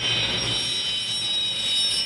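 Jet aircraft engine running: a high, steady whine over a loud rushing noise.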